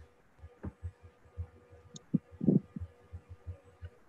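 Faint low thumps, several a second and uneven, over a faint steady hum, with a brief low sound about two and a half seconds in: open-microphone noise on a video call.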